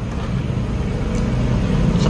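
Steady low engine rumble, like a motor vehicle running close by, growing slightly louder over the two seconds.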